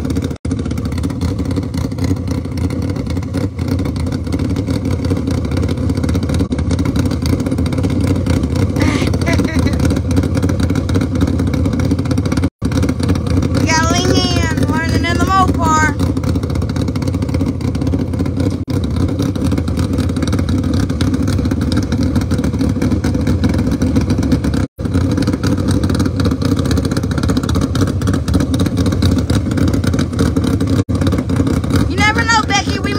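Dodge Demon drag car's engine running steadily at idle, with no revving. A brief voice calls out about halfway through.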